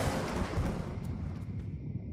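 Anime soundtrack sound effect: a sudden burst of noise that dies away into a low rumble and hiss, with a faint high tone held near the end.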